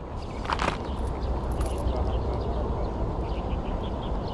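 Steady low rumble of wind buffeting the microphone outdoors, with one brief higher sound about half a second in.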